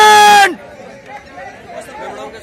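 A man's loud, drawn-out shout held on one pitch, ending with a falling tail about half a second in, followed by the low chatter of a crowd of young men.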